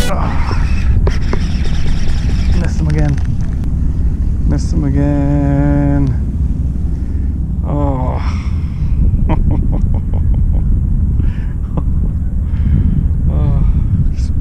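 A steady low outdoor rumble, with scattered light clicks from a fishing reel being handled. A man makes a few brief wordless vocal sounds, one of them a held hum about five seconds in.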